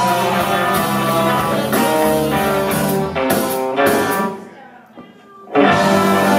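Live band music with electric guitar, bass, drums, keys, tenor sax and trombone. About four seconds in the band stops for about a second, then comes back in at full level.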